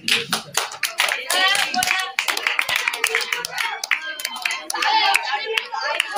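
A small group clapping hands, irregular and uneven, with people talking over it.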